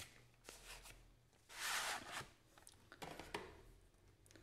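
Hands handling a plastic Blu-ray case and its cardboard slipcover. There are a few light clicks and taps, and one louder sliding scrape about one and a half seconds in, lasting about half a second, as the case slides against the slipcover.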